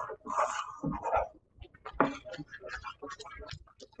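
Wooden spoon stirring and scraping in a skillet of cheese sauce and macaroni, heard as a run of short, light clicks and scrapes. A brief, vague voice-like sound comes about half a second to a second in.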